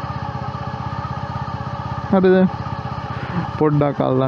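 A motorcycle engine idling, its firing pulses steady and even with no revving.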